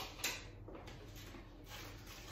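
Faint handling of plastic food tubs on a kitchen counter: a couple of light clicks near the start, then soft low rustling.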